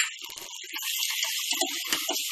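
Thick masala paste sizzling in a pan on the gas, a steady hiss that grows louder about a second in. A few light knocks of a silicone spatula are heard as the paste is stirred.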